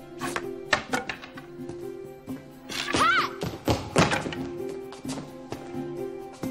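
Practice swords knocking together in quick, irregular strikes over background orchestral music, with a short vocal exclamation about three seconds in.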